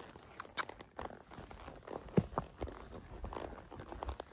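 A horse walking on a soft dirt trail: irregular muffled hoof thuds, with one sharper knock about two seconds in.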